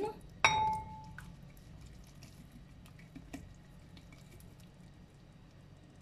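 A glass jar strikes a ceramic bowl about half a second in, giving one short ringing clink. After that there are only faint small ticks as the shrimp and sauce slide out of the jar.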